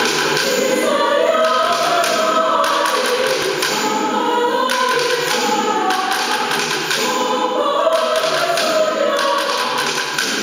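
Mixed choir of men's and women's voices singing, several parts sustained together without a break.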